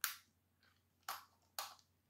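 Sharp little clicks from handling a compact digital camera's plastic body and compartment door: one at the start, then two more about half a second apart just after a second in.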